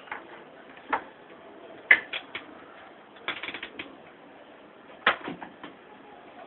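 Irregular sharp clicks and clacks of small hard objects being handled: a few single knocks, then two short rattling clusters.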